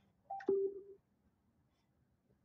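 Skullcandy Barrel XL Bluetooth speaker sounding a two-note electronic prompt tone as its buttons are held: a short higher beep, then a longer lower one about half a second in, with a button click as the second note starts.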